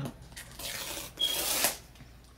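Paper seal and cardboard of a laptop box rubbing and tearing: a soft rustle, then a louder scraping tear lasting about half a second that stops just before the end.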